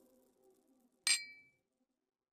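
A faint low drone fades out, then about a second in a single glass clink rings briefly and dies away: the sound effect of a studio logo sting.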